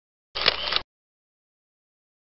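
A camera shutter firing once: a short burst of about half a second with two sharp clicks in it.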